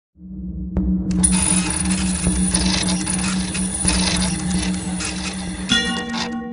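Jazz trio music: a low held bass note under a dense, shimmering cymbal wash, with a new chord of held tones entering near the end as the shimmer stops.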